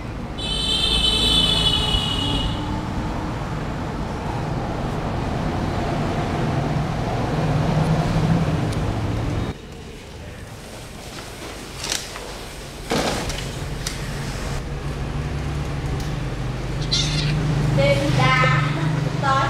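Black kitten giving a high-pitched mew in the first couple of seconds as the puppy paws at it, over a steady low hum. A person's voice comes in near the end.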